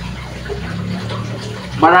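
Steady rushing background noise with a low hum during a pause in speech; a man's voice starts again near the end.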